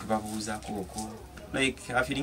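A man speaking quietly into a handheld microphone in a small room, his words coming in short stretches with pauses.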